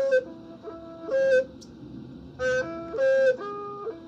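Hmong raj (bamboo flute) playing a slow melody of held notes that step up and down, with several notes swelling louder and brighter.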